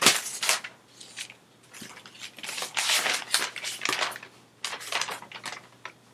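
Paper rustling as notebook pages are handled and turned, in several short irregular rustles.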